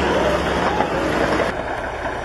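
Caterpillar D8 crawler bulldozer's diesel engine running, heard as a steady rushing noise.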